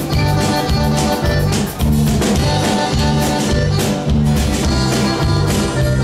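Live conjunto band playing an instrumental stretch with a steady beat: button accordion, guitars, electric bass and drum kit.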